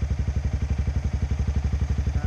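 Motorcycle engine idling with a steady, even pulsing beat.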